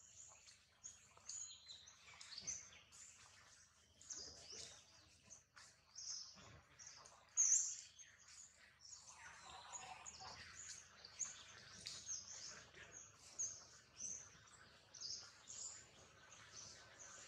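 Faint, busy chatter of many short, high-pitched bird chirps going on throughout, with one louder call a little past the middle.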